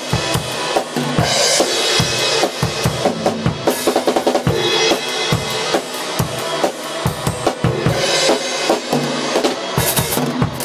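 Acoustic drum kit played in a steady rock beat: bass drum and snare strokes under washing cymbals, with a quick run of hits about three and a half seconds in.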